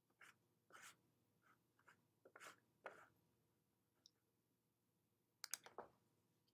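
Near silence: room tone with a few faint scattered clicks and rustles, and a quick cluster of sharper clicks near the end.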